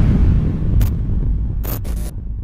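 Logo sting sound effect: the low rumble of a deep boom dying away, broken by short static-like glitch bursts about a second in and twice near the end.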